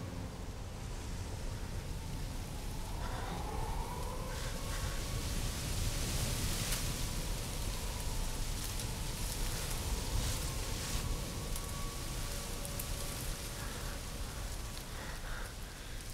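A faint distant siren rises in pitch about three seconds in and holds a steady wailing tone for several seconds, over a steady noisy rumble that swells through the middle and eases off near the end.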